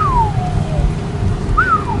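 Someone whistling two notes, a long falling whistle and then a short rise-and-fall near the end, over the steady low rumble of the Dodge Charger 392 Hemi V8 driving.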